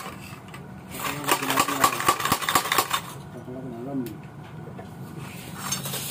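Metal rod clattering and scraping inside a motorcycle muffler's steel body: a rapid run of metallic clicks and rattles for about three seconds, then much quieter.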